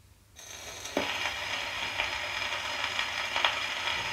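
Surface noise of a shellac 78 record on a Decca 71 acoustic gramophone as the needle is set down in the lead-in groove: a steady hiss with crackle that starts suddenly, with a sharp click about a second in and a few fainter ticks.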